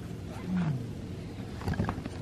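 Domestic cat giving a short, low growl that falls in pitch, about half a second in.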